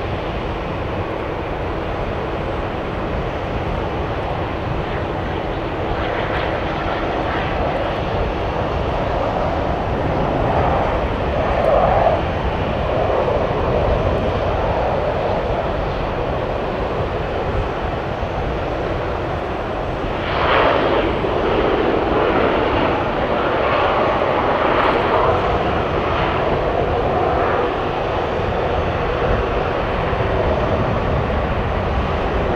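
Boeing 777-300ER's GE90 turbofan engines running at taxi power, a steady jet rumble that swells about ten seconds in and again from about twenty seconds in.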